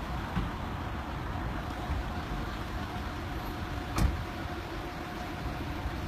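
Road traffic: cars and a bus running and passing on the road, a steady rumble with a faint steady tone over it. A single sharp knock about four seconds in is the loudest sound.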